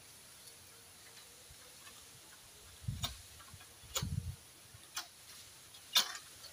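A long-poled sickle (egrek) chopping the frond stalks of a tall oil palm: four sharp knocks about a second apart, the first two with a dull thud.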